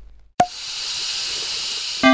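Logo-animation sound effect: a sharp hit about half a second in, then a steady hissing whoosh.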